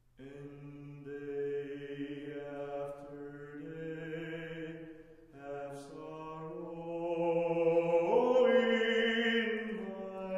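Small mixed a cappella choir of sopranos, altos, tenors and basses singing long sustained chords. The voices start together at once, shift to a new chord after a brief dip about five seconds in, then swell louder near the end.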